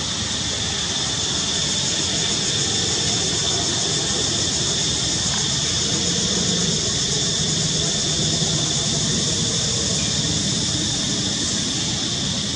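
Steady, high-pitched insect drone that holds level throughout, over a low background rumble.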